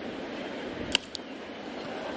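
Crack of a baseball bat meeting the ball about a second in, a single sharp report followed by a fainter click, over a steady murmur of the ballpark crowd.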